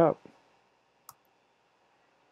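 The last spoken word ends in the first half-second. About a second in comes one sharp click, a click on the computer that ends the slide show, with faint room tone around it.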